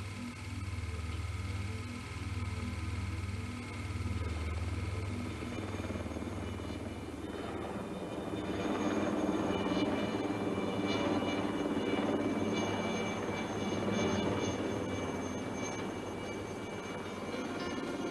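Helicopter in flight, its rotor beating as a steady low rumble, mixed with background music that grows fuller about halfway through.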